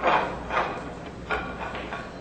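Pool shot: the cue tip strikes the cue ball, then the balls knock together, three sharp clacks in all, the first and loudest at the very start, ringing briefly in a large hall.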